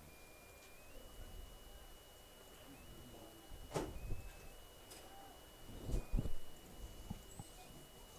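Faint background during a pause in the commentary: a thin, steady high-pitched whine that steps slightly up and down in pitch, with a single sharp click about four seconds in and a few soft low thumps around six seconds in.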